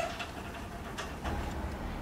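Tandem bicycle being wheeled along by hand, giving a few light clicks over a low steady rumble.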